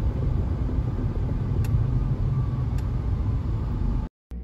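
A car driving, heard from inside the cabin: a steady low rumble of road and engine noise, with two faint ticks about a second apart.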